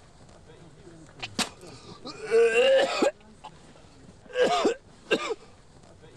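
A man coughing in several separate short bursts, with a longer voiced cough about two seconds in; his throat is irritated by CS gas.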